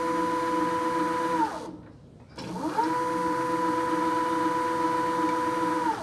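Electric motor and gearbox of a rear drive axle whining as the throttle pedal spins it up: it runs at a steady pitch, winds down about a second and a half in, then spins up again and runs steady until it drops off at the end.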